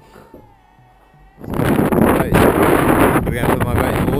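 Quiet room sound with a faint steady tone, then about a second and a half in a sudden loud rush of wind buffeting the microphone outdoors.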